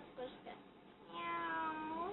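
One drawn-out meow, falling slightly in pitch, lasting about a second in the second half.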